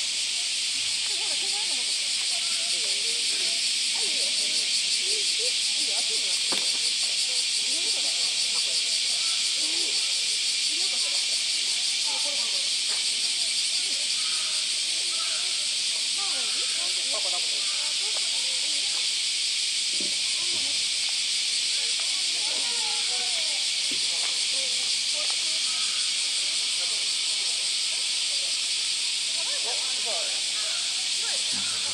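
A loud, steady cicada chorus: an unbroken high buzzing hiss that holds at one level throughout. Faint voices of people talking lie underneath.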